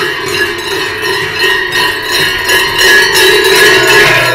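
Many large bells worn by Silvesterchläuse, round crotal bells on a chest harness and big cowbells, ringing together as their wearers walk: a dense, continuous jangle with a steady low ring beneath it.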